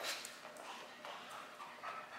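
A German Shepherd's paws and claws on rubber floor matting as the dog jumps down and moves round to heel: a few sharp clicks at the start, then faint, uneven footfalls.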